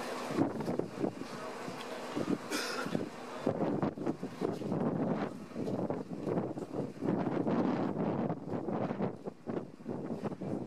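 Wind buffeting the camera's microphone in uneven gusts.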